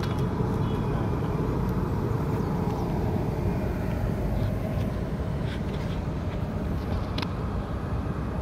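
Steady low outdoor rumble picked up by a phone microphone, with a few faint clicks.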